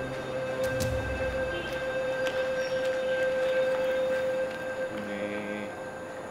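Background music: a single high note held steadily, over a low bass that fades out in the first two seconds.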